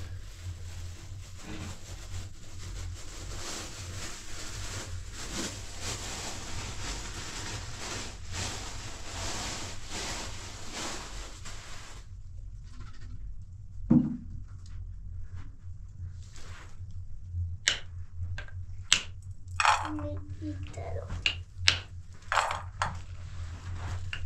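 A steady hiss over a low hum for the first half. Then, after a sudden change, come sharp irregular knocks: a wooden rolling pin striking nuts in a steel bowl to crack them open. The knocks come more often toward the end.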